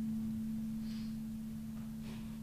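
A steady low electrical hum holding one pitch, with the room otherwise quiet; a faint short hiss about a second in.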